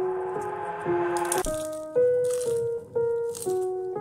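Background music: a melody of held notes stepping to a new pitch about every half second, with a shaker-like rattle on some beats.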